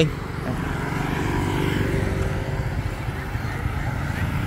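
Motorbikes and scooters riding past on a road, a steady engine and traffic rumble that swells slightly about a second in.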